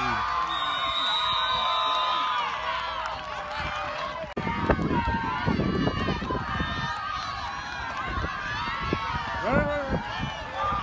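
Spectators and sideline players at a youth football game shouting and cheering as a play runs, many voices overlapping. A high steady tone is held for about two seconds near the start, and the shouting gets louder about halfway through.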